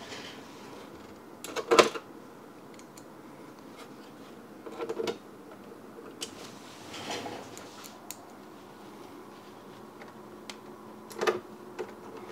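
A hand screwdriver and screws working loosely into the plastic stand mount of an all-in-one PC's back cover. A few scattered clicks and knocks of tool and parts handling; the sharpest comes about two seconds in.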